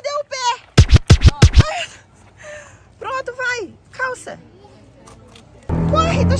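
A young child's high voice calling out in short bursts, with a quick run of about five loud thumps about a second in.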